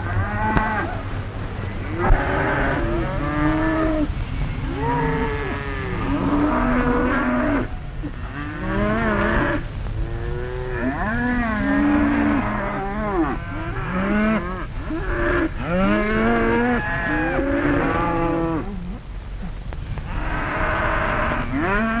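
A herd of cattle mooing, many overlapping calls one after another, over a steady low rumble.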